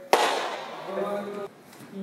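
A single loud, sharp crack just after the start, which rings out over about a second, followed by a man's voice.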